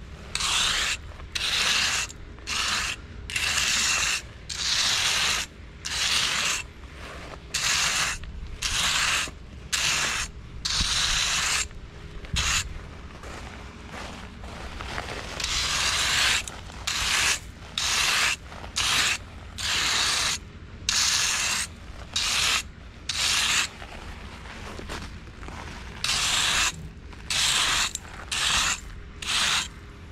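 A flat hand trowel scraping back and forth over loose open-graded bedding stone, a gritty rasp of small stone chips in quick repeated strokes, about one to two a second, with a few longer sweeps. It is the touch-up smoothing of a screeded paver base, fading in the rough spots where the screed pipes lay.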